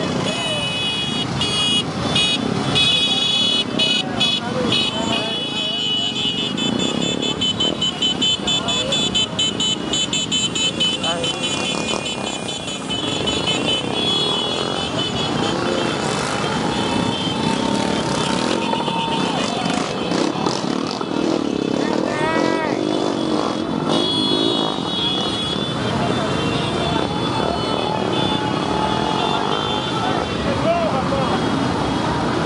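Many small motorcycles running together at low speed in a crowded motorcade, with voices and shouting mixed in. A shrill, rapidly pulsing sound rides over the engines for much of the first twelve seconds and again briefly later.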